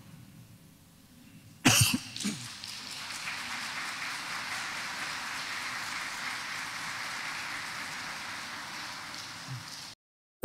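A congregation applauding steadily for about seven seconds, cut off sharply near the end. It starts just after a loud knock about two seconds in.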